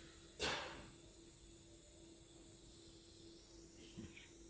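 Quiet lecture-hall room tone with a faint steady hum, and one short hiss of breath near the microphone about half a second in.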